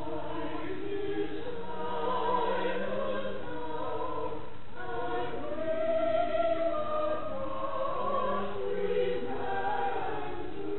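A small group of singers singing together in sustained, held notes that move from pitch to pitch, with a brief break about halfway through.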